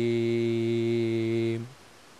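A man's voice holding one long, steady sung note at the end of a line of an ilahija, a Bosnian devotional hymn. The note ends about one and a half seconds in.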